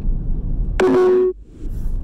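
A single electronic beep of steady pitch, about half a second long, a little under a second in, over the steady road rumble inside a moving car; the rumble cuts out briefly just after the beep.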